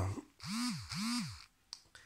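A man humming two short notes with his mouth closed, each rising then falling in pitch, a thinking "mm-mm" in a pause in his talk, followed by a single faint click near the end.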